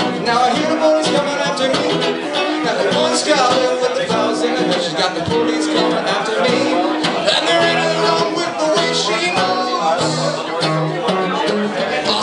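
A man singing to his own steadily strummed hollow-body archtop guitar, the strumming running on without a break under the voice.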